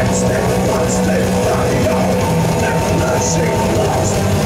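Heavy metal band playing live: distorted electric guitars and bass holding low chords over drums, loud and unbroken, with the chords shifting every second or so.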